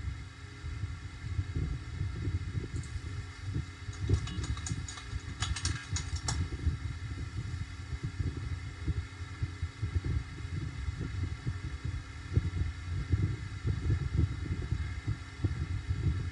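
Low, uneven rumbling background noise on a microphone, with a few faint clicks about three to six seconds in.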